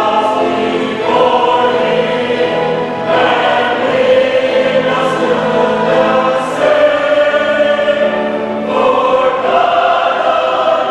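Mixed choir of men and women singing a choral anthem in full sustained chords, the harmony shifting to a new chord every second or two.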